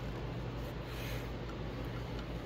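A steady low hum in a small room, with faint rustles and light ticks of hands working a rubber fuel hose and its fittings.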